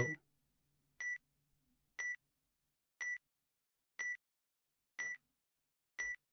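Electronic countdown-timer beeps, one short high beep each second, marking the time given to guess the answer.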